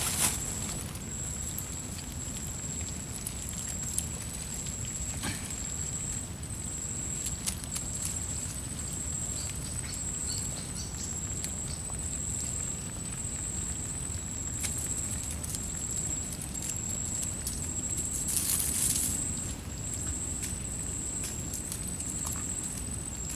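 Faint clicks and rustles of a nylon net trap and its catch being handled, with a louder rustle near the end, over a steady low background rumble and a continuous high-pitched whine.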